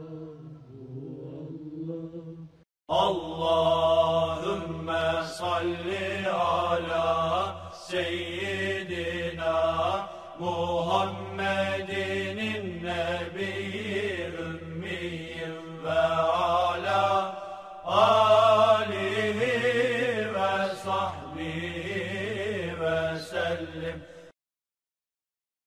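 Ornamented religious chanting: a solo voice winding through long melismatic phrases over a steady low drone. It starts after a brief silence about three seconds in, pauses briefly near the end, then resumes.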